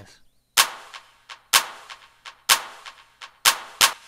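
Drum-machine handclap samples layered with a Roland TR-808 snare, playing back in a programmed techno-house pattern: four loud, sharp hits about a second apart, each with a short reverb tail, with quieter ticks between them.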